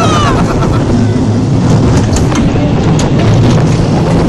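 Roller coaster train rolling along its track: a loud, steady low rumble with a few sharp clicks about two to three seconds in.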